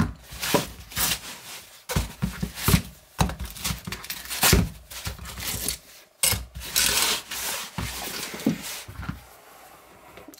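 Folding knives and a canvas knife roll being handled on a tabletop: irregular fabric rubbing and scraping, with a few light knocks as the knives are moved.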